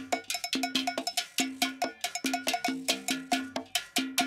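Cowbell and other hand percussion playing a steady, syncopated groove of sharp, ringing strikes several times a second. It is a percussion part separated out from a full band recording.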